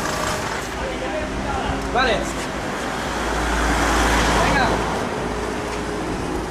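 Road traffic noise with a low rumble, swelling to its loudest about halfway through and then fading, as a vehicle passes. A man says "vale" once.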